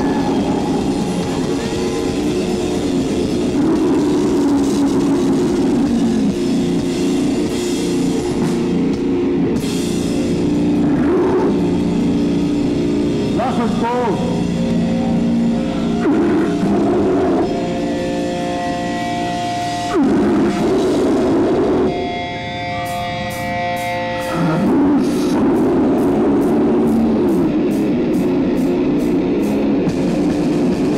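A death/doom metal band playing live, with heavily distorted guitars, drums and a vocalist at the microphone. Partway through the band drops to held, ringing chords with a dip in loudness, then comes crashing back in near the end with steady cymbal strokes.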